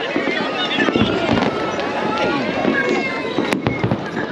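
Fireworks going off amid people talking, with one sharp bang about three and a half seconds in.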